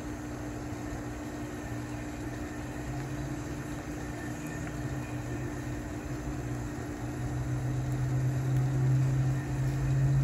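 A steady low machine hum, holding a constant pitch with a faint hiss, growing somewhat louder over the last few seconds.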